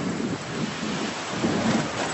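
Steady outdoor noise of wind and sea surf, a dense even hiss with no clear voices.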